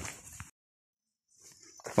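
Faint noise fading out, then about a second of dead silence where two clips are joined, followed by a man's voice starting near the end.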